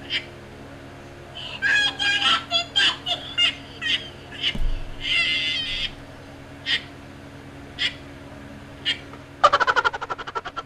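Stifled, high-pitched laughter in short squeaky bursts and a breathy wheeze, from someone trying not to laugh. Near the end a fast rattling sound effect starts.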